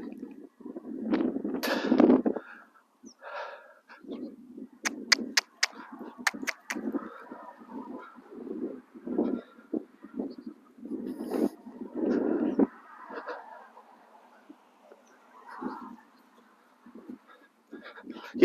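Footsteps of a horse and its handler walking on a sand-school arena surface: irregular crunching footfalls, with a quick run of sharp clicks about five seconds in.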